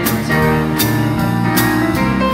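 Small live band playing an instrumental passage: electric keyboard chords over electric bass guitar, with drum-kit strokes on a steady beat about every 0.8 seconds.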